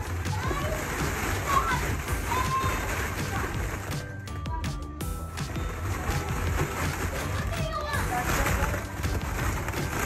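Plastic ball-pit balls rustling and clattering as a toddler and an adult's hand stir them, with children's voices around.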